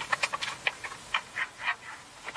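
Small cardboard paint box being handled and opened: a string of light, irregular clicks and scratchy scrapes from the card and its flap.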